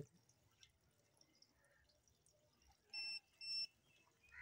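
Two short electronic beeps from an optical fibre fusion splicer, about half a second apart, near the end; otherwise near silence.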